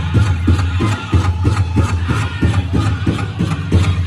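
Powwow drum group singing a straight song for the fancy shawl dance: voices chanting over a big drum struck in a steady beat of about three strokes a second.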